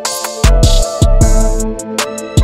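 Dark trap instrumental beat at 155 BPM: a sustained dark melody over drum-machine hits and hi-hats, with a long deep 808 bass note coming in about halfway through.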